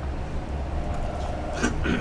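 A pause in the talk filled by a steady low hum of room noise picked up by the lecture microphone, with a brief faint sound near the end.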